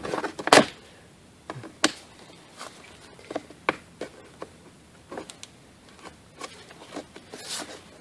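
A screwdriver prying up the metal retaining tabs of the inner window felt strip on a Honda Civic door, and the strip being worked loose. It makes scattered sharp clicks and scrapes, about a dozen in all, the loudest about half a second in and just before two seconds.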